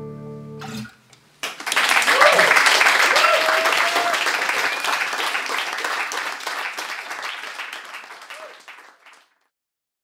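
An acoustic guitar's final chord rings and is cut off; about a second later a small audience applauds with a few cheers, the clapping tapering and stopping near the end.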